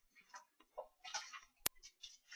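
A single sharp click about one and a half seconds in, amid faint scattered room noises.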